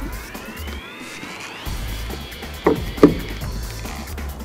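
Background music, with the cardboard lid of a smartphone retail box being slid off. A rising sliding sound ends sharply a little under two seconds in, followed by two short handling knocks about three seconds in.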